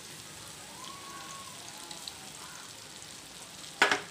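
Egg-coated chicken kebabs shallow-frying in hot oil in a pan: a steady sizzle of bubbling oil. Just before the end there is one short, sharp knock.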